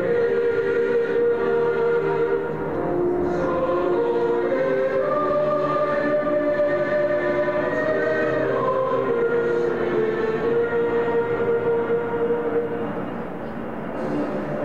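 A slow anthem sung by a choir of voices in long held notes that change pitch slowly, dipping slightly in level near the end.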